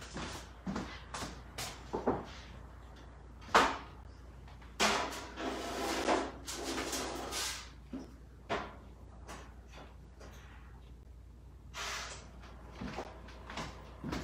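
Oven door opening and shutting as a foil-covered baking dish goes onto the rack: a series of knocks and clatters, the sharpest about three and a half seconds in, with a few seconds of scraping after it.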